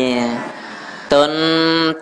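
A Buddhist monk's voice chanting a Khmer sermon in long held notes. One note fades out about half a second in, and after a short pause a second, higher note is held until near the end.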